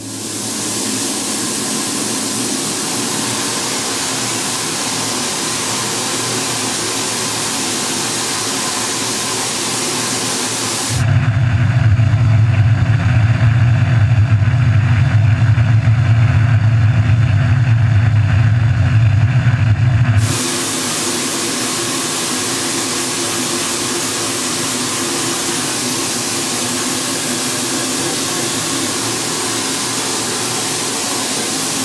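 Laboratory shotcrete spray nozzle (Sika MiniShot) spraying mortar with compressed air: a steady hiss. From about 11 to 20 seconds in it gives way to a louder, deeper rushing sound with the hiss's high end gone, then the hiss returns.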